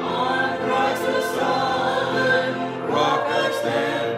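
Church congregation singing a hymn together, the voices sustained and continuous.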